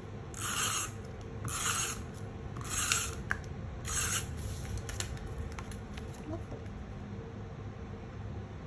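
Tape runner drawn across cardstock four times, about a second apart, laying adhesive with a short rasping sound on each stroke.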